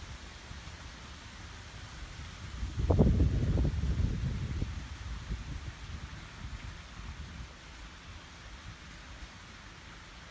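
Low, irregular rumble of wind on the microphone, swelling for a couple of seconds about three seconds in around one spoken word, then easing off.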